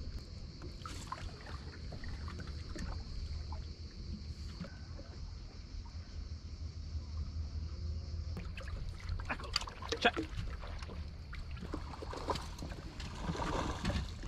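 Open-air ambience on a small boat on a lake: a steady low rumble of wind on the microphone under a faint, even high hiss, with a few light clicks and taps about two-thirds of the way through.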